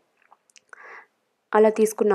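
Mostly quiet, with a few faint clicks and one short, soft rustle a little under a second in; a woman starts speaking again about one and a half seconds in.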